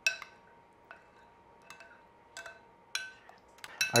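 A metal spoon clinking against a glass bowl of tomato sauce: about eight light, separate clinks, each with a brief ring, the first the loudest.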